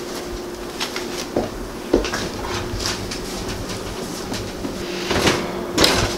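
Casserole dish being put into an electric oven and the oven door shut: a few separate knocks and clacks, then a louder clatter near the end as the door closes, over a steady low hum.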